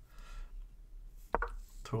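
A computer key pressed once, a single sharp click a little over a second in, stepping the chess game review forward one move.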